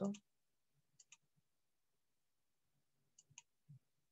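Faint computer mouse clicks: a quick pair about a second in and another pair just past three seconds.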